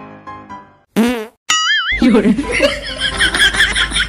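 A loud, short fart sound with a wavering pitch about a second in, over quiet background music, followed by a brief warbling tone. Laughter follows from about two seconds in.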